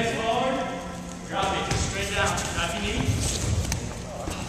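Voices talking in a large gym hall, with soft low thuds of people dropping onto their knees on padded mats about three seconds in.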